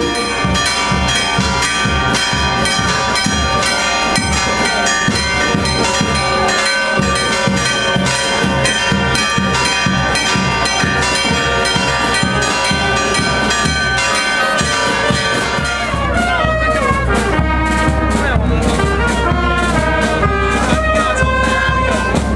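Brass band music: held brass chords over a steady, even beat. About sixteen seconds in, the melody breaks into quick rising and falling runs.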